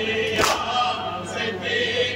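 A group of men chant a noha, an Urdu mourning lament, in unison over a PA. About half a second in comes one sharp slap of matam, hands striking chests in time with the lament.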